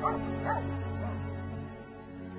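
A dog barking three short times, about half a second apart, over soft background music with long held notes.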